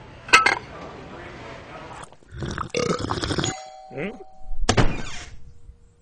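A person's short non-word vocal sounds and a questioning "hm?", with a sharp click just after the start and a brief steady tone in the middle.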